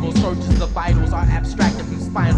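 Hip hop track from a 1996 cassette: a rapper's voice over a beat with a heavy bass line and regular drum hits.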